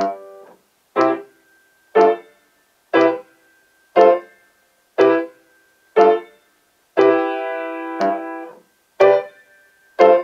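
Piano playing a march slowly, at 60 beats a minute: short, detached chords in both hands, one struck on each second. About seven seconds in, one chord is held for about a second and a half.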